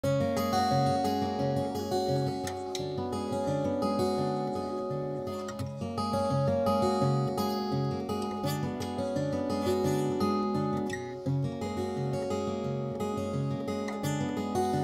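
Twelve-string acoustic guitar played fingerstyle: picked melody notes ringing over a bass figure that repeats at an even pace.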